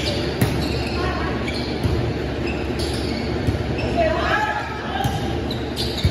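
Volleyball rally in a large gym hall: several sharp slaps of hands and forearms on the ball, with players' short shouted calls, all echoing in the hall.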